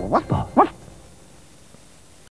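Three quick, rising yaps from a cartoon puppy, close together, followed by faint tape hiss.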